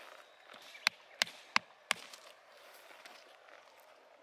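Hammer striking a steel chisel set on a geode, four sharp blows about a third of a second apart, splitting the geode open.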